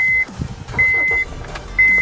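Honda Civic 1.8 VTEC engine cranking and catching about half a second in, then idling, while a dashboard warning chime beeps in a steady high tone about once a second.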